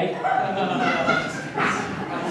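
A performer's high-pitched voice making drawn-out vocal sounds rather than clear words, followed by a short breathy burst near the end.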